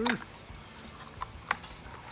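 A few light, sharp plastic clicks as the parts of a Hayward skim-vac plate and hose adapter are handled and fitted together.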